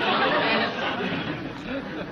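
Studio audience laughing after a punchline, the laughter dying away over about two seconds.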